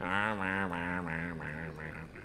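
A man's voice doing a mock whine, imitating a grumbling child at the dinner table: one drawn-out, nasal moan with a slowly falling pitch that wavers in several pulses and stops just before the end.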